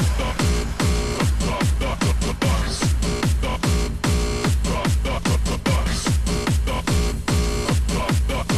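Electronic dance music mixed live on DJ turntables: a steady four-on-the-floor kick drum, about two beats a second, each kick a deep thump that drops in pitch, with sharper hi-hat-like percussion between the kicks.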